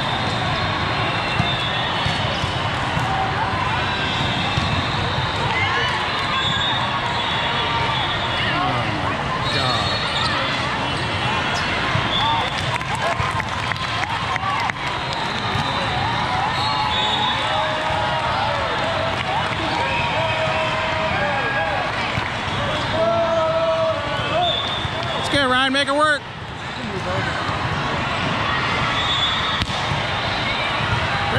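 Busy volleyball hall din: many overlapping voices of players and spectators, short sneaker squeaks on the sport court, and scattered thuds of volleyballs being hit and bounced, all echoing in a large hall. A louder shout rises about 25 seconds in.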